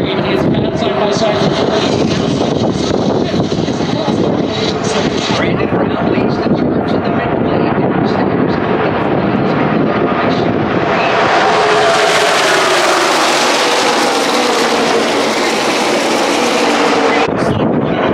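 A pack of NASCAR Xfinity Series stock cars with V8 engines passing at full race speed: the roar swells about ten seconds in, its pitch falling as the cars go by, and cuts off suddenly near the end. Before the cars arrive, a general hubbub of crowd voices and wind on the microphone.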